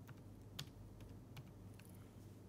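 Faint typing on a computer keyboard: about five separate key taps at an uneven pace, the loudest about half a second in.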